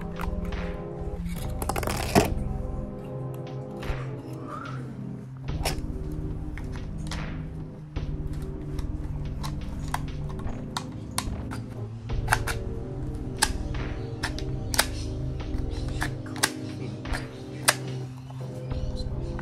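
Background music, over many short sharp clicks and snaps from handling the plastic gel blaster pistol, coming irregularly and more often in the second half.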